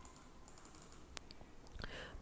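A few faint clicks on a computer, with one sharper click about a second in, over quiet room tone.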